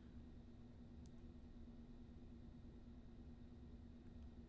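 Near silence: room tone with a faint steady hum and one faint tick about a second in.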